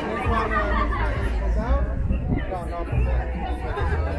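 Chatter of a market crowd: several nearby voices talking at once over a background babble, with a low rumble underneath.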